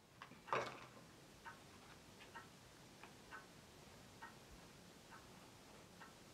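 Faint clock ticking about once a second, with softer ticks between some of the beats, over a low room hum; a single short, louder rustle or knock about half a second in.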